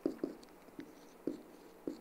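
A dry-erase marker writing on a whiteboard: about five short, separate pen strokes.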